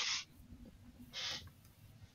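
A pause between speakers on a voice call: the last word trails off at the start, then near silence broken by one short, soft breathy puff about a second in.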